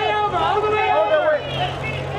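Loud shouted calls from press photographers, overlapping, for about the first second and a half, then dropping to a quieter babble of voices over a steady low hum.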